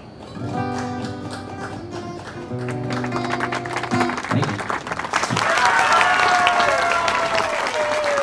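An acoustic guitar rings out on its final held chords, with one change of chord partway through, to end a song. About five seconds in, audience applause and cheering take over and become the loudest sound.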